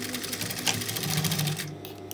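Industrial sewing machine stitching fabric at a fast, even rate, then stopping a little past halfway through.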